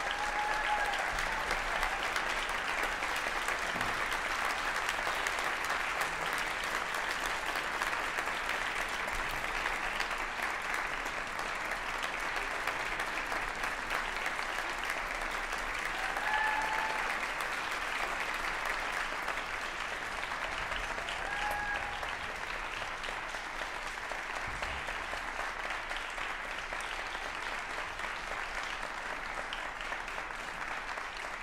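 Theatre audience applauding steadily at the end of a performance, with a few short cheers rising above the clapping: about a second in, and twice more later on.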